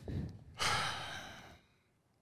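A man's sigh into a close microphone: one breathy exhale lasting about a second and fading away.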